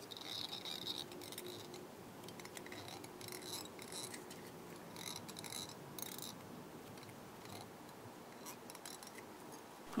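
Faint, irregular rustling and small clicks of fingers handling a foam fly body on a hook and unwinding the tying thread from it.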